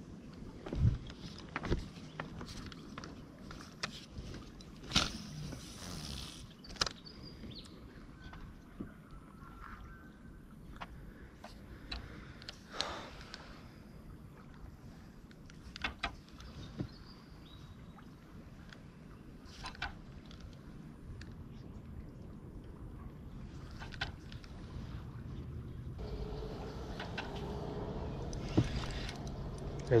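Spinning reel being wound in on a soft-plastic retrieve: a faint steady winding and handling noise with scattered clicks and knocks. It grows louder over the last few seconds as a fish comes on.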